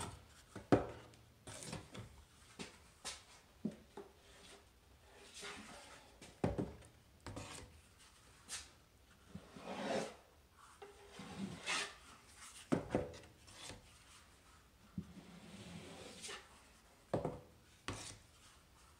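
Putty knife spreading and scraping drywall joint compound into an inside corner, in irregular strokes with a few sharp taps of the knife.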